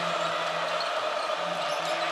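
Steady crowd noise of a packed basketball arena, with a basketball being dribbled on the hardwood court.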